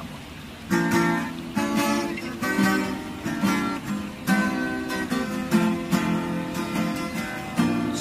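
Two acoustic guitars strumming chords in a steady rhythm, playing a song's instrumental introduction. They start just under a second in.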